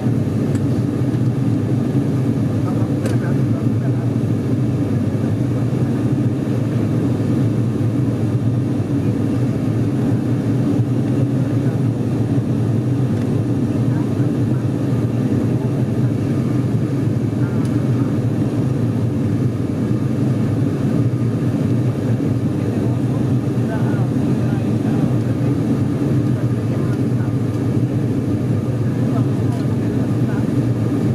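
Steady propeller and engine drone of an ATR 42-600 turboprop, with its twin Pratt & Whitney PW127 engines, heard inside the passenger cabin in flight. The drone stays even in pitch and level throughout.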